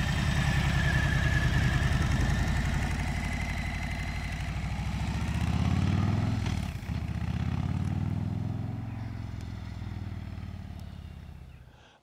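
2021 Harley-Davidson Street Bob's Milwaukee-Eight 114 V-twin running through its stock exhaust as the bike rides past and away, sounding subdued. The engine note climbs about six seconds in, breaks off briefly, then settles and fades as the bike gets farther off.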